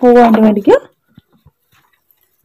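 A voice speaking for under a second, cut off, followed by near quiet with a few faint ticks.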